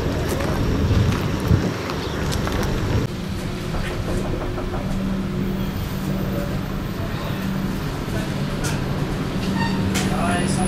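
Diesel railcar engine idling steadily, a low even hum, with indistinct voices in the background. About three seconds in, the sound shifts to how it is heard inside the railcar's passenger saloon.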